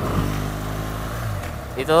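BMW R 1200 GS Adventure's boxer twin engine running at a steady, unchanging speed while the motorcycle holds its pace on cruise control. A voice begins right at the end.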